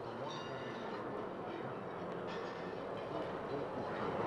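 Ambient drone music from a four-track, cassette tape loops, turntable and synthesizer, fed straight from the mixer: a dense, hissing, rumbling texture that slowly swells in loudness.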